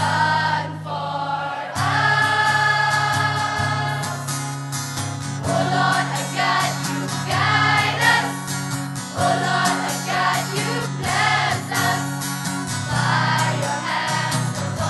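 Girls' choir singing in unison with sustained notes, accompanied by an acoustic guitar.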